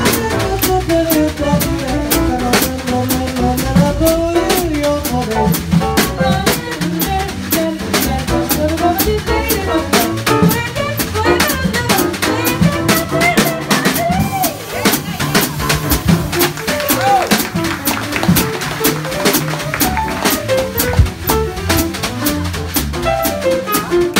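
Live small-group jazz: two women singing over a walking upright bass, drum kit with dense cymbal strokes, and piano.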